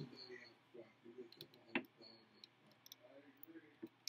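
Faint, scattered clicks from the knobs of an Etch A Sketch being handled, with a faint murmur of voices in the background.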